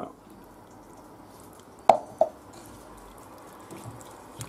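Evaporated milk poured from a measuring jug into a pan of mushroom sauce: a faint steady liquid sound, with two short plops about two seconds in.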